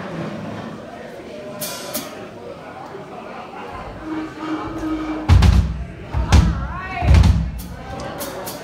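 Three loud, low thumps about a second apart in the second half, just after a short steady hum, over a background of voices.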